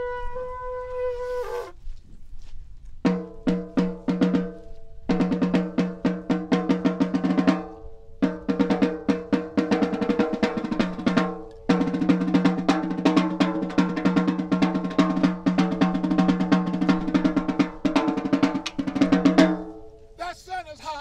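A blown animal horn holds one note that ends about two seconds in. After a short pause, a drum played with sticks beats fast, dense rolls and strokes, with brief breaks about five, eight and twelve seconds in.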